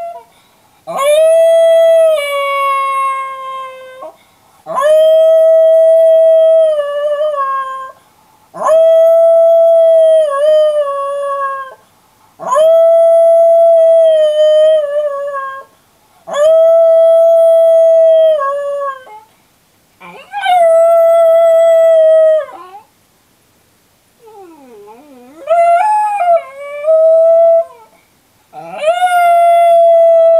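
Miniature schnauzer howling while left alone in its crate. It gives a series of long, steady howls, each two to three seconds long, about every four seconds, with a wavering call that slides up and down about three-quarters of the way through.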